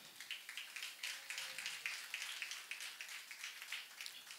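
A small audience clapping: a quiet, steady patter of many hand claps.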